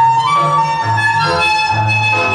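Tango music: reedy bandoneon chords held over a bass line that steps to a new note about every half second.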